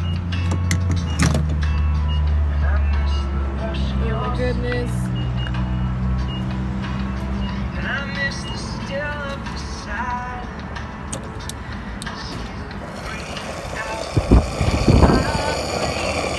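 A vehicle engine idling with a steady low hum that fades after about six seconds, under faint voices or music, with a few clicks and thumps near the end.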